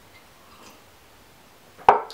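A drinking glass set down on a table with one sharp knock near the end, after a stretch of quiet while it is being drunk from.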